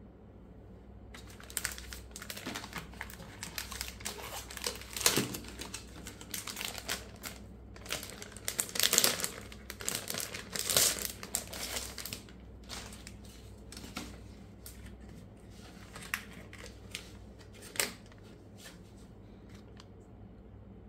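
Clear plastic packaging sleeve crinkling as it is handled and opened. The crackles come in irregular bursts, loudest in the first half, then thin to sparser rustles and a few sharp clicks.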